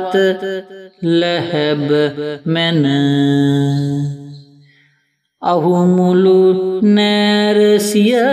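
A single voice chanting Sinhala verse (kavi) in a slow, melodic sing-song, holding long notes and gliding between them. It tails off and stops for a moment about five seconds in, then starts the next line.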